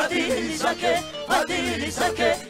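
Live gospel praise music: a choir sings with held, wavering notes over band backing with a steady bass line.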